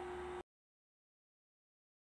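Near silence: a faint steady hum cuts off about half a second in, leaving dead digital silence for the rest.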